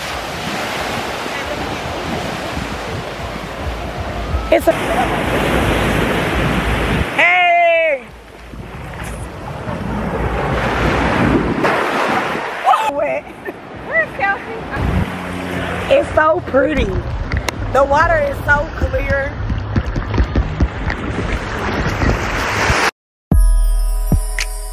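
Ocean surf breaking and washing up on a beach, with wind on the microphone. A voice calls out briefly about a third of the way in, and voices come and go in the second half. Music starts just before the end.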